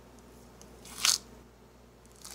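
Peeled pink grapefruit being torn in half by hand: one short, crisp tearing crack of the pith and segments splitting, about a second in.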